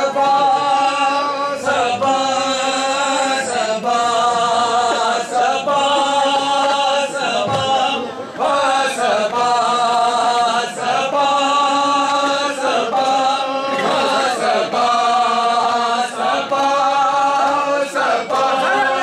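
Men's voices chanting a noha together in sustained phrases of about two seconds each, with sharp slaps of bare-handed chest-beating (matam) over the chant.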